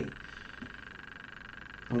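Faint, steady electrical hum and buzz of the recording's background noise, with no other sound in it.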